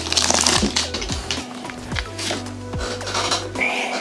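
Foil wrapper of a Pokémon card booster pack crinkling as it is torn open and the cards are pulled out, loudest in the first second. Background music plays throughout.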